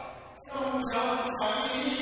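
Cantonese opera (yuequ) singing: a voice holds long sustained notes, dipping briefly about half a second in before the next held note starts.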